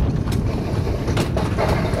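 Alpine coaster sled running fast down its steel tube rails: a steady rumble of the wheels on the track, with a few short sharp clicks.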